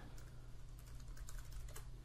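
Computer keyboard typing: a quick run of faint keystroke clicks over a low steady hum.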